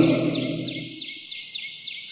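Small birds chirping in the background: a quick run of short, falling high-pitched chirps, several a second, while a man's voice trails off near the start.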